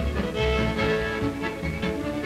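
Old-time square dance music from a string band, the fiddle carrying the tune over a steady bass beat.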